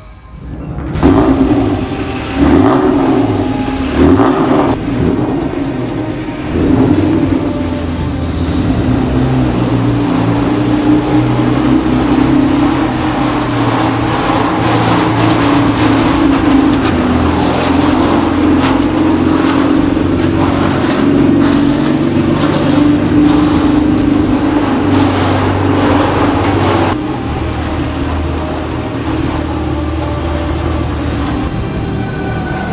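Honda NSX's V6 engine running, with a few loud surges in the first several seconds, then a steady note, mixed with music.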